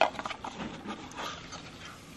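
Small cardboard jewelry box being handled and its lid pulled open: a few short scrapes and taps, the loudest right at the start, then fainter handling sounds.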